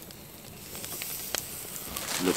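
Open wood fire burning: a steady faint hiss with a few sharp crackles, the loudest about a second and a half in.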